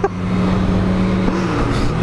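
Motorcycle engine running at steady revs while riding, with wind noise on the helmet microphone. The engine note shifts about one and a half seconds in.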